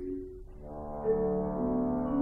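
French horn and marimba playing a slow classical duet: after a brief lull, the horn comes in about half a second in with a held low note, and further notes sound above it.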